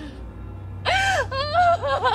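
A person wailing in grief: about a second in a loud, high-pitched cry that rises and falls, then a wavering, sobbing voice crying out words.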